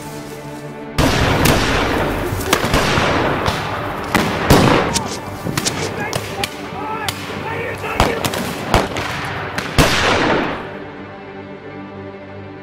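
Battle gunfire from period rifles breaks out suddenly about a second in: a dense crackle of shots with several sharp, louder reports, and men shouting in the middle of it. It dies away near the end, over steady background music.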